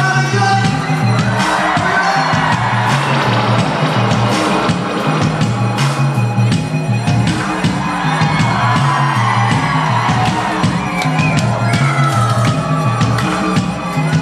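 Live reggae band playing loud, with a repeating bass line and steady drum hits, and the crowd whooping and cheering over it.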